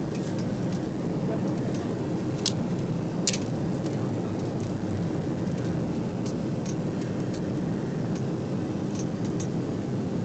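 Steady engine and airflow noise inside an airliner cabin in flight, deep and unbroken, with a couple of brief clicks about two and a half and three seconds in.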